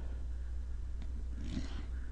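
Steady low electrical hum of the recording setup in a pause between speech, with a brief faint rustle about one and a half seconds in.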